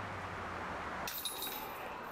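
Faint metallic jingle of disc golf basket chains as a putted disc lands in them, starting about a second in.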